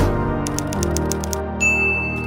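Typewriter sound effect: a hit at the very start, then a fast run of key clicks, about nine a second, and a bell ding about a second and a half in, over soft background music.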